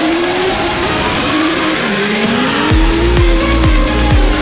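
Drift cars in a tandem drift, engines revving and tyres squealing, the engine note dipping and then climbing again midway. Near the end an electronic dance track's heavy bass thumps come in, about two a second.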